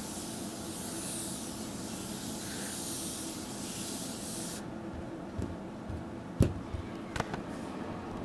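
A steady high hiss that cuts off suddenly a little past halfway, then a few light taps of fingertips on the multitouch table's touch surface.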